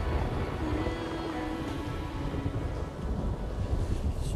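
Low rolling thunder with rain, a steady rumble throughout, under soft background music.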